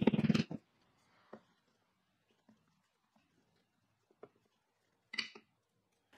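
Near silence, with a faint tick about a second in, another a few seconds later, and a short soft tap or scrape just after five seconds, from wood being handled on a workbench.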